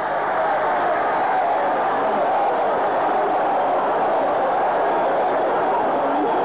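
Boxing arena crowd cheering and shouting in a steady, loud roar at a knockout.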